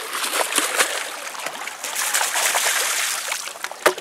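Shallow water splashing and trickling around people wading in waders, with scattered small clicks and one sharper click near the end.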